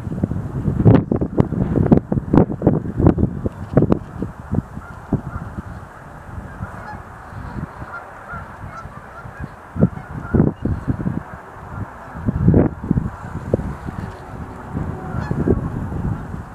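Sandhill cranes calling: repeated loud calls in bursts, the busiest stretches in the first four seconds and again about ten to thirteen seconds in.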